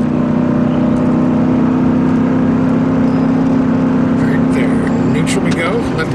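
Pickup truck engine running steadily under load at highway speed, towing a heavy trailer, heard from inside the cab as a loud, even drone. Near the end the drone drops away, as when the transmission is put into neutral before braking.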